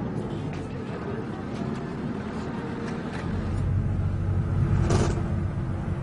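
Minibus running, its engine and road rumble heard from inside the cabin, growing heavier about three seconds in, with a few light clicks and one brief sharp noise near five seconds.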